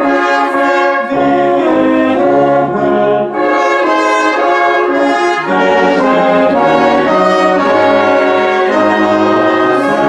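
Brass band of euphoniums, tubas, tenor horns, trumpets and trombone playing a hymn in full, held chords that change every half second to a second.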